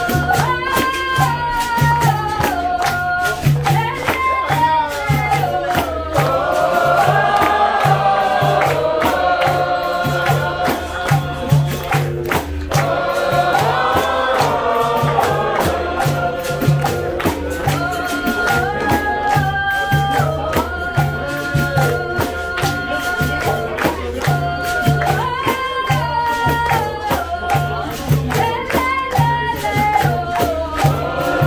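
Capoeira roda music: berimbaus, an atabaque drum and pandeiros keep a steady driving rhythm while the group sings together, with hand clapping from the ring.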